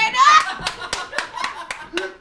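Hand claps: a quick run of sharp claps, about four a second.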